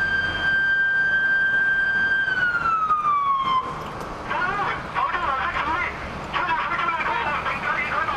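A siren holds one steady high tone, then falls in pitch and cuts off about three and a half seconds in. After it, several voices shout over one another.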